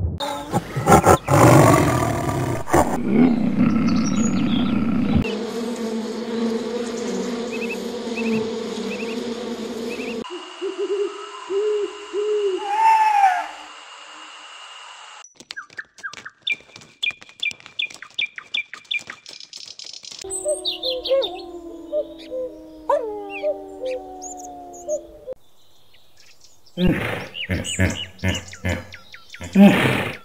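A string of different animal calls, cut together and changing abruptly every few seconds, with chirps and gliding calls among them.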